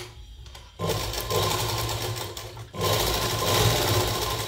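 Sewing machine stitching cloth in two runs: it starts about a second in, stops briefly a little before three seconds, then starts again, the needle strokes coming fast over a steady motor hum.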